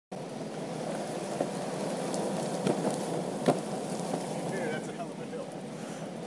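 Steady rush of wind on the camera microphone mixed with wheels rolling on asphalt while riding, broken by a few sharp clicks, the loudest about three and a half seconds in.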